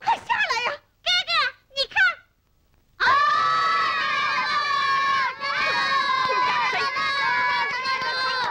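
A few short voiced exclamations, then, about three seconds in, a group of children shouting and cheering together in one long, held cry.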